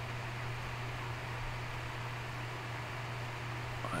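Steady low electrical-sounding hum with an even hiss: the recording's background room tone.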